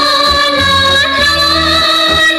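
A woman singing a sustained "la la la" refrain in a Yanbian Korean pop song, over a steady musical accompaniment.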